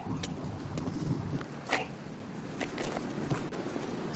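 Movie soundtrack background between lines of dialogue: a steady noisy hiss with a few scattered short clicks and knocks, played back over a video call's screen share.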